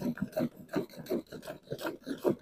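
Milk squirting from a cow's teats into a pail during hand milking: a steady rhythm of short, rasping jets, about four a second, as the hands alternate.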